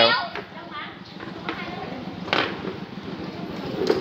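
Plastic wheels of a child's ride-on wiggle car rolling over a concrete floor, a steady rolling noise, with one short sharp knock about two seconds in.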